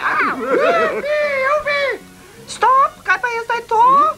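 Cartoon characters' voices making wordless cries and exclamations, the pitch gliding and bending. A longer stretch of cries comes first, then several short rising cries in the second half.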